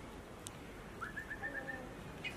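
A bird calling: a quick run of about six short, high whistled notes at one pitch in the second half, after a single sharp click about half a second in.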